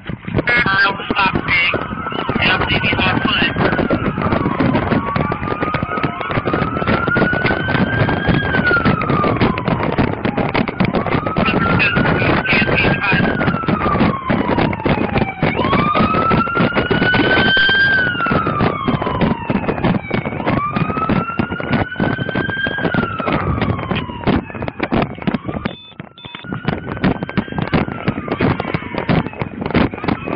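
Police car siren on a slow wail, its pitch rising and falling about every four to five seconds, over constant rustle and knocks on a body-worn microphone.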